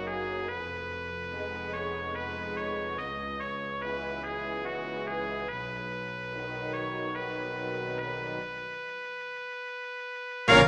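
Horns, bassoons and brass of a wind orchestra holding slow sustained chords while the upper woodwinds rest. Near the end the sound thins to a single held note.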